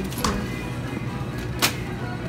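Background music over a steady low hum, with a sharp click just after the start and a louder sharp clack about one and a half seconds in.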